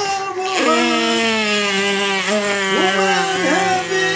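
Distorted electric guitar music starting about half a second in, a chord held steady with a few sliding notes over it.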